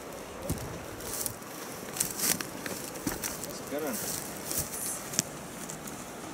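Footsteps crunching through dry grass and brush, with irregular snaps and cracks of twigs underfoot.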